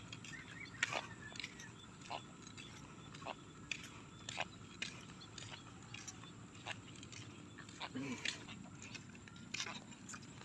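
Faint, irregular footsteps of barefoot walkers on a wet, muddy footpath: scattered soft steps a second or so apart over a low outdoor background.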